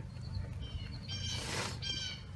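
Towel rubbing spray wax across a car's painted body panel, with a short rubbing hiss about halfway through. Birds chirp faintly in the background.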